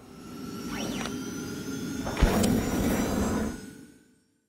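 Logo sting sound effect: a rushing whoosh that swells up, a sharp low thud about two seconds in, then a fade-out near the end.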